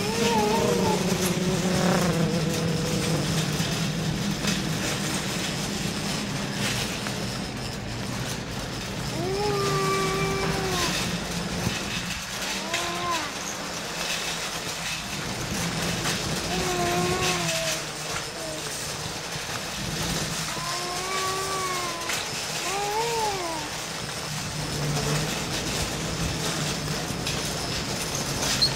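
Shopping cart rolling fast over a hard store floor, a steady rumble and rattle of its wheels and wire basket. Over it, a voice makes several short drawn-out sounds that rise and fall, about a second each, spread through the second half.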